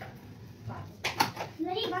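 A sharp click about a second in, then a child's high voice briefly near the end.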